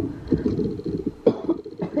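A woman's low, raspy non-speech vocal sounds, rough and breathy, with a short sharper catch about a second in; she is ill with COVID and speaking hurts her.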